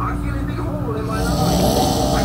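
A man snoring in his sleep, a steady low snore.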